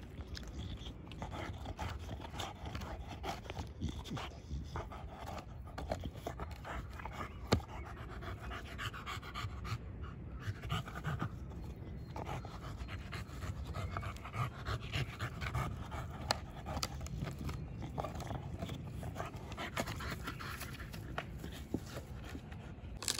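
American bully dog panting hard while gnawing on a wooden plank, with a few sharp clicks of teeth on the wood, the loudest about seven and a half seconds in.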